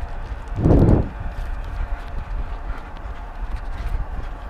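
A runner's footfalls on an asphalt road, picked up by a body-carried action camera as a rhythmic knocking over steady wind noise. A brief louder rush comes about half a second in.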